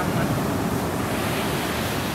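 Ocean surf breaking steadily, with wind noise on the microphone.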